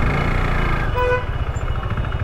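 KTM RC 390's single-cylinder engine running at low revs, with a short vehicle horn beep about a second in.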